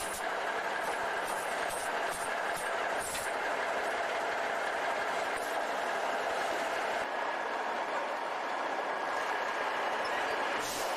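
Semi-truck diesel engine idling steadily while it warms up. There are a few short knocks in the first three seconds from gear being handled on the deck plate behind the cab.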